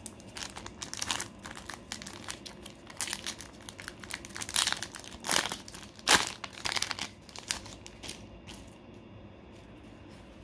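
A Pokémon booster pack's foil wrapper crinkling as it is handled and torn open, with the loudest crackle about six seconds in. The crackling stops a little after eight seconds.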